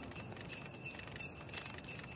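Faint jingle bells tinkling softly in a cartoon's music track, with a few thin held high notes.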